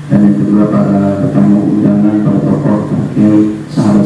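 A man chanting solo into a microphone, in slow melodic phrases of long held notes that break and start again every second or so.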